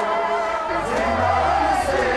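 A chorus of voices chanting together in a noha-style mourning chant. A low steady hum comes in underneath, less than a second in.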